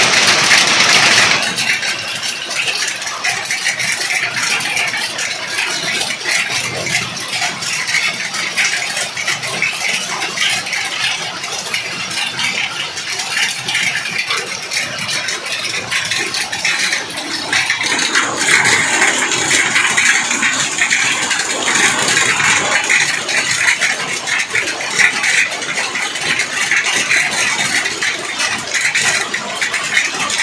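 Hail falling hard on a paved street, a dense rattle of countless small hailstone impacts that grows heavier about two-thirds of the way in.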